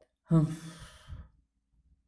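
A man's voice giving one short, breathy 'hah', acted as a grunt of effort with a punch, lasting about a second.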